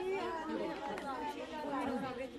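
Several voices talking over one another: the overlapping chatter of a small group of women, with no single speaker standing out.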